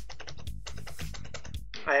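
Computer keyboard keys being typed in a quick run of clicks as a phone number is entered, the same digit key struck again and again.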